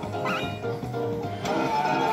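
Tuneful electronic music from a Rainbow Riches Pots of Gold fruit machine as its gamble feature lands on a win, with a brief wavering squeal about a quarter second in.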